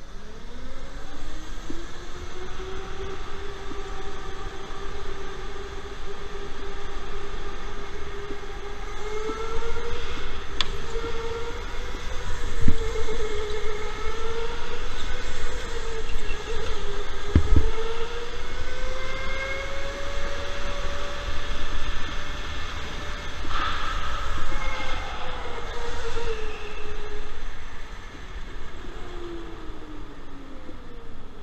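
Electric go-kart motor whining as the kart laps. The pitch climbs as it accelerates in the first few seconds, then rises and falls with speed through the corners and drops near the end. Two short knocks come in the middle, about five seconds apart.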